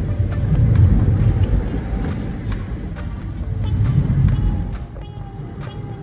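Low road and engine rumble heard from inside a moving car's cabin, swelling twice as the car drives in traffic. Faint music comes in near the end.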